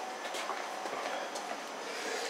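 Handling noise from a handheld camera being carried: a steady, fairly faint rustle with a few light ticks.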